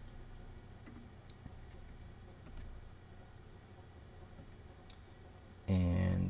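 A few faint, scattered clicks of typing on a computer keyboard, over a low steady background hum. A short voiced sound comes near the end.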